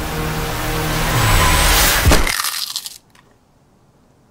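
Tense film score with a rising noise swell that peaks in a sharp hit about two seconds in. The music then dies away within a second to quiet room tone.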